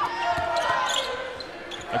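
Court sound of a basketball game in play: a ball bouncing on the hardwood floor over arena crowd murmur and faint voices.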